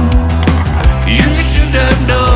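Rock song played by a band: electric guitars, bass, snare drum and Rhodes electric piano over a steady drum beat.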